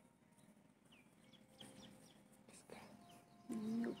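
Small birds chirping faintly and intermittently. Near the end, a person says 'okay', the loudest sound.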